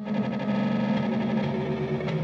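Music: a dense, effects-processed electric guitar sound, detuned and distorted, with several held tones layered into a low, sustained chord. It starts suddenly out of silence.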